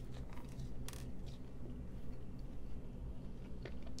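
Faint chewing of a sauced chicken wing, with a few soft mouth clicks, over a steady low room hum.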